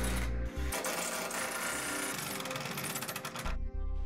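Cordless drill driving screws through the rack's steel strap into a wooden board, its motor buzzing with a short pause under a second in and stopping suddenly about half a second before the end. Background music plays underneath.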